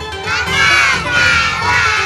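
Segment intro jingle: upbeat music with a group of children's voices shouting over it, coming in about a quarter of a second in.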